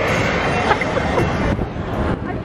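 A steady low rumbling noise with a few faint, short high squeaks.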